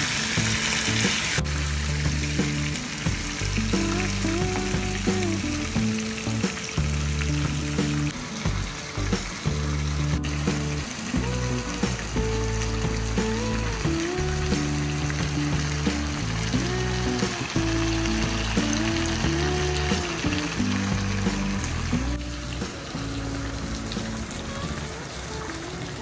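Whole masala-coated fish sizzling as they shallow-fry in oil in a pan, a steady frying hiss throughout, over background music with a repeating bass line and a light melody.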